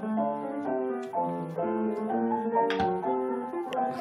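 Grand piano fitted with a self-playing player system, playing a tune in steady even notes and chords. A brief knock sounds a little before three seconds in.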